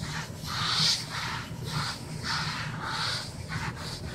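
Magic Eraser melamine foam sponge scrubbing back and forth on a greasy wooden desktop, a rhythmic swishing rub at about two strokes a second.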